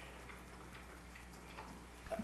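Quiet room tone with a steady low hum and a few faint, scattered ticks.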